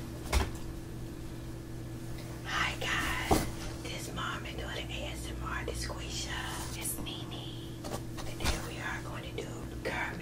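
A woman whispering, over a steady low hum, with two short sharp clicks, one near the start and one about three seconds in.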